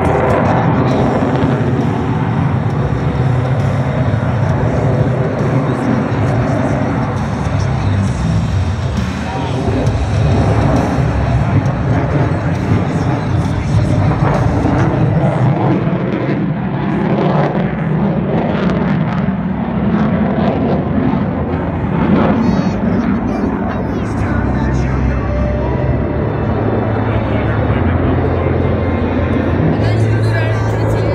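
Jet noise from an F-22 Raptor flying overhead, mixed with music that plays steadily throughout.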